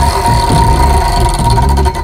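Prize wheel spinning: rapid ticking that spreads out as the wheel slows, over a steady low whirring drone, cutting off suddenly as the wheel stops.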